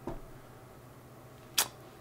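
Quiet room tone broken once, about one and a half seconds in, by a single short, sharp click of a computer mouse button.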